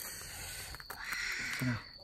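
Blood cockles sizzling in their shells on a wire rack over charcoal, their juices hissing, the sizzle growing stronger about a second in. A short vocal sound near the end.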